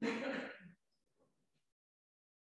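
A person clearing their throat once, a short rough burst lasting under a second, followed by near silence.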